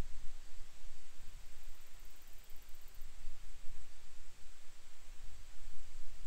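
Wind gusting across the microphone: an uneven low rumble that rises and falls, over a steady hiss.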